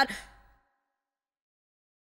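The last spoken word of an Urdu voice-over ends right at the start and its echo fades within about half a second, followed by dead silence.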